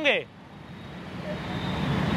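Road traffic: a passing motor vehicle's low rumble, growing steadily louder through the pause.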